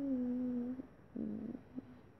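A girl humming one steady note with closed lips for about a second, then a shorter, rougher hum, and a faint click near the end.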